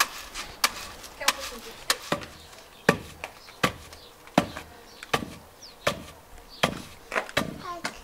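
Wooden pestle pounding roasted peanuts in a wooden mortar (pilão), grinding them for paçoca: a steady series of sharp thuds, about four every three seconds.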